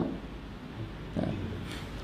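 Low steady room hum with one brief, faint voiced "ha?" about a second in.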